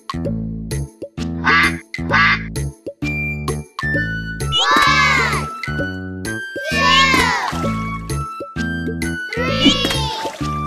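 Upbeat children's song music with a bouncing bass line, over which cartoon ducks quack several times; the loudest quacks come about five, seven and nine and a half seconds in.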